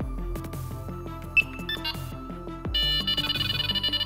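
Delkim Ev-D electronic bite alarm: a short high beep about a second in, then, from about two-thirds of the way through, the alarm sounding a rapid pulsing high tone as line is drawn through it, its speaker no longer muted. Background music runs underneath.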